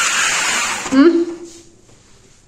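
A woman's loud breathy sigh, then a short hummed "mm" about a second in.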